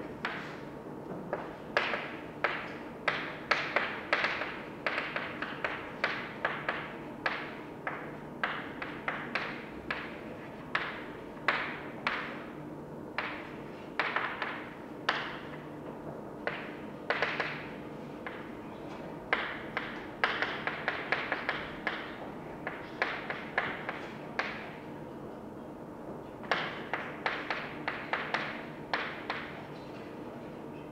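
Chalk writing on a blackboard: quick, irregular taps and short scratches as each stroke is made, coming in runs with brief pauses between them.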